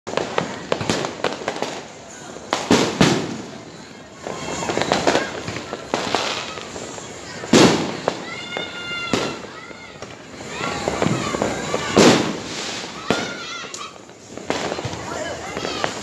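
New Year's Eve fireworks and firecrackers going off on all sides: a steady run of bangs and crackling, with several much louder blasts standing out.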